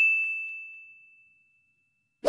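A bright 'ding' sound effect: one high bell-like tone, struck just before, ringing out and fading away over about a second and a half.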